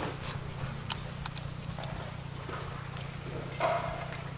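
Stage room tone with a steady low hum and scattered small clicks and knocks as French horns are handled and raised into playing position, with one brief louder sound about three and a half seconds in; no playing yet.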